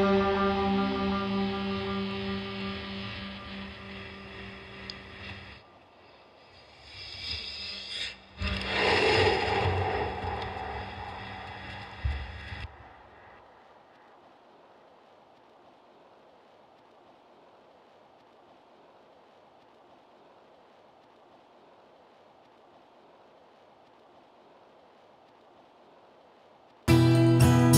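The last chord of an effects-processed acoustic guitar track rings out and fades. After a short break, two swelling washes of effects noise rise and die away, with a click near the end of the second. The last dozen seconds are near silence.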